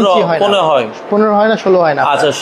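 A man speaking steadily; only speech is heard.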